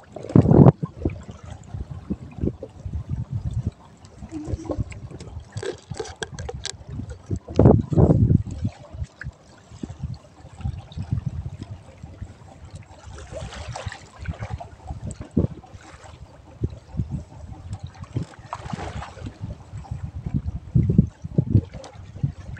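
Sea water washing and slapping against the hull of a small open boat, with irregular low thumps, the loudest near the start and about eight seconds in, and a couple of longer washes of water later on.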